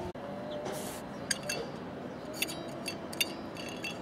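Light metallic clinks and ticks, several scattered over a few seconds, with a short hiss just under a second in.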